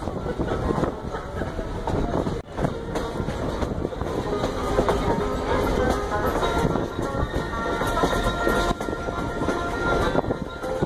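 Great Smoky Mountains Railroad passenger train running, heard from on board: a steady rumble and rattle of wheels on the rails with rapid clicking. Faint thin whining tones come in over the second half.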